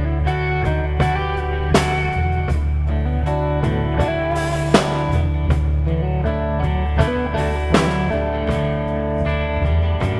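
Live rock band playing an instrumental passage: acoustic guitar, electric guitar and a drum kit over steady low bass notes, with a sharp drum hit about every three-quarters of a second.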